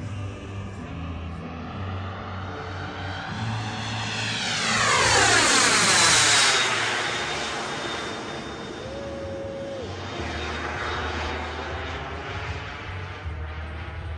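Twin gas-turbine engines of a large-scale model MiG-29 jet during a fast pass: the turbine noise swells to its loudest about five to six seconds in, with a high whine that drops slightly in pitch as the jet goes by, then eases off.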